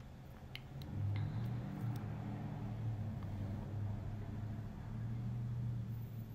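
A low, steady machine hum that swells about a second in and again near the end, with a few faint clicks in the first second and a half.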